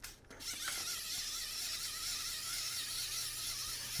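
Wind-up clockwork motor of a Zoids Hel Digunner model kit. A few clicks of winding come first, then from about half a second in the motor runs with a steady whir and a wavering whine as the figure walks.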